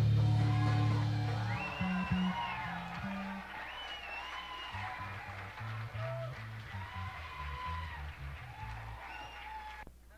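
A loud sustained band chord rings out and decays, then electric guitar and bass play loose, quiet notes with bent pitches between songs. The sound drops off abruptly just before the end.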